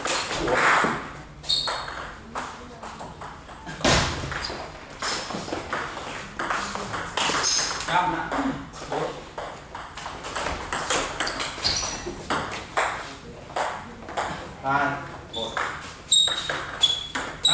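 Table tennis ball clicking back and forth as it strikes the rubber paddles and the table in rallies, with short gaps between points.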